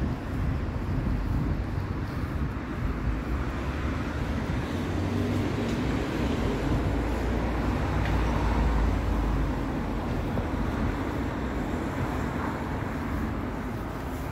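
Steady low rumble of outdoor town-centre background noise, mostly distant traffic, swelling slightly a little past the middle.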